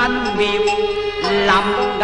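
Cantonese opera music: a traditional Chinese ensemble playing held melodic notes that slide in pitch between phrases.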